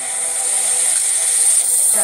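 Pop backing track in the gap before the chorus: a hissy noise swell that rises steadily in loudness over a faint held chord, building into the chorus.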